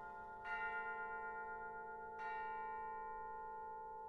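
Quiet passage of concert band music: a bell-like metal percussion instrument is struck softly twice, about half a second in and again about two seconds in, and each stroke rings on with long sustained tones.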